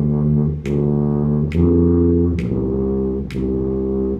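Tuba playing a slow line of quarter and half notes from a B-flat major beginner exercise. A sharp click falls on every beat, a little under 0.9 s apart.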